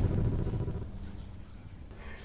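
The low rumbling tail of the intro sting's deep thump dies away over about a second, leaving a faint steady low hum of room tone.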